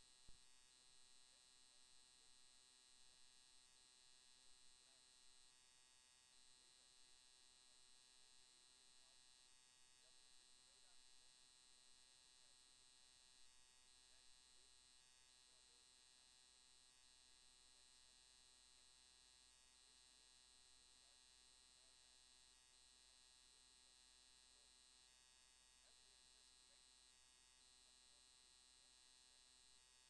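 Near silence: a faint steady electrical hum, with one small click right at the start.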